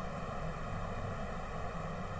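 Steady background noise in a pause between words: a low rumble with a faint hiss and a few thin, even tones running underneath.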